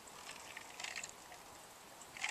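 Faint sounds of a man drinking from a cup, with a few soft clicks near the middle.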